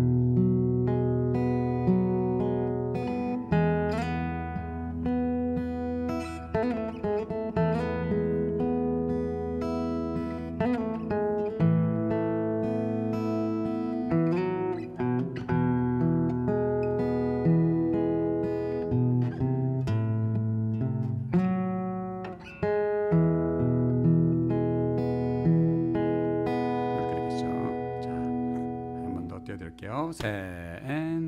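Martin OMC-28E steel-string acoustic guitar fingerpicked slowly in E: arpeggiated Eadd9, E, Aadd9 and Am chords over held bass notes, with slides and hammer-ons in the melody.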